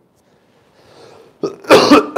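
A man coughs once, sharply, near the end.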